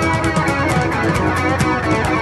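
A live funk band playing an instrumental passage: electric guitar over bass, drums and keyboard, with a steady beat.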